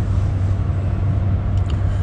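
Steady low rumble of a car heard from inside its cabin, with engine and road noise and no sudden events.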